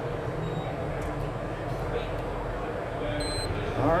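A short electronic timer beep about three seconds in, marking the end of the filler's UV LED cure countdown, over the steady background noise of a busy exhibition hall.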